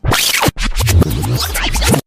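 Electronic music clip with scratching sounds, starting abruptly, with a short break about half a second in and a deep bass after it.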